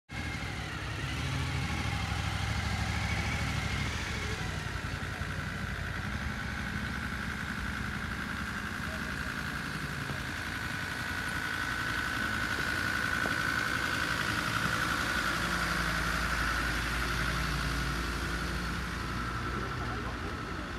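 Engines of a slow convoy of vehicles, cars and a motorcycle, running at low speed as they pass while towing parade floats. A steady high whine runs alongside and is strongest in the middle.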